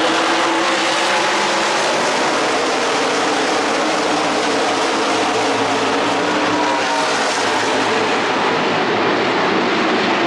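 NASCAR stock cars' V8 engines running at speed on the track, a loud, steady din whose pitch shifts as cars go by.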